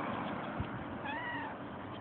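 A cat meowing once, a short call of about half a second that rises and then falls in pitch, about a second in.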